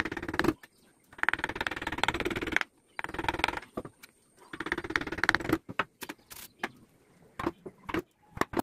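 Hand-pushed carving chisel and hand working on a teak relief: four scratchy scraping strokes of up to about a second and a half each, in the manner of paring cuts and chips being brushed off, then a few light scattered clicks near the end.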